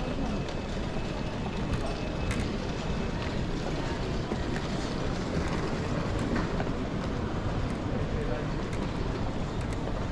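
Luggage trolley rolling steadily across a tiled airport terminal floor, a continuous low rumble with a few small clicks. Under it runs the murmur of a busy terminal hall with distant voices.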